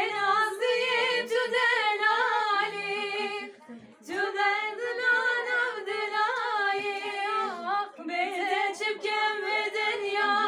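A woman singing a Kurdish song unaccompanied, in long held, wavering phrases with short breaks about four seconds in and again near eight seconds.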